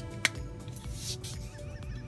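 Background music with one sharp click about a quarter second in, the loudest sound, and a brief scrape about a second in, from the plastic joints of a transforming robot toy being moved.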